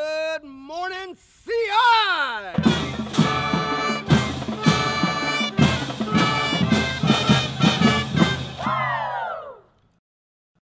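A man shouts a drawn-out, swooping call, then a brass band with drums plays a lively tune. The music ends in a falling slide and stops abruptly just before the end.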